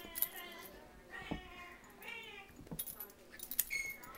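Small dogs tussling over a plush toy, giving a few short high-pitched whines, with metal collar tags jingling and clicking as they pull.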